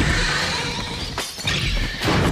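A film-trailer sound effect: a loud, sudden crash that runs on as a dense noisy rush, with a short sharp hit a little past a second in.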